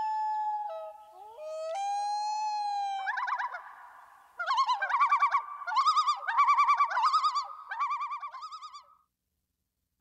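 Common loon calls: two long wailing notes that rise and hold, then a wavering tremolo of rapid quavering notes that stops about a second before the end.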